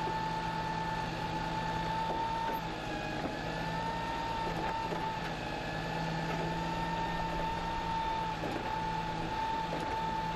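A Volvo refuse truck's hydraulic side-loader arm lifting a wheelie bin and tipping it into the body, over the truck's diesel engine running. A steady, slightly wavering whine sits over the engine sound.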